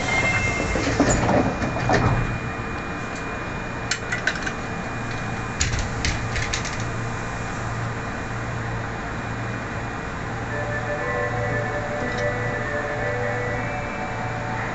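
Subway train heard from inside the driver's cab: a steady low electrical hum with scattered clicks and knocks. Near the end, several whining tones at different pitches come in as the train moves off.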